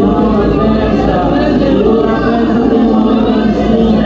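A church congregation singing a hymn together, many voices holding long, steady notes.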